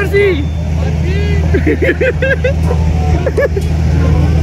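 A steady low engine drone with several voices talking over it.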